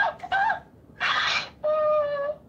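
Women laughing: a breathy burst of laughter about a second in, then a drawn-out, steady high vocal note near the end.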